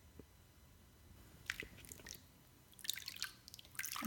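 Bath water sloshing and splashing in short bursts as it is swished by hand, once about a second and a half in and again near the end.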